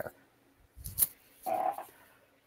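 A person's faint mouth sounds between sentences: a soft click about a second in, then a short hum.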